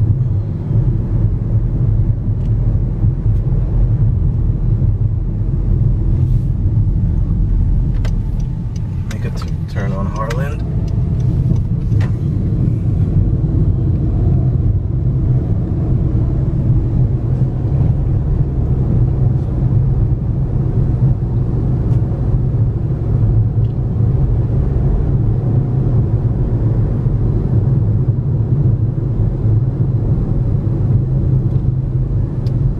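Car's engine and tyres running steadily at low street speed, heard from inside the cabin as a steady low rumble. A few clicks and a short higher-pitched sound come about eight to twelve seconds in.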